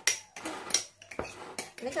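A few sharp clicks and knocks from handling a glass jar of soybean paste while a plastic bag is laid over the paste and pressed down.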